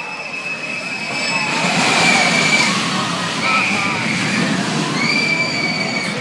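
A Vekoma Boomerang roller coaster train runs down the track, its steady rumbling roar swelling about a second and a half in. Over it, riders let out three long, high screams.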